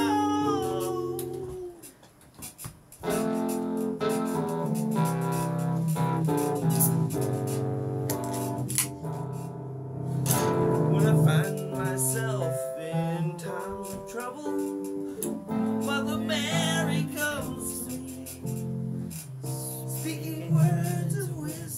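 Nord Electro 2 stage keyboard played with both hands: held chords over bass notes, with a short break about two seconds in. A voice sings along without words in places, most clearly near the end.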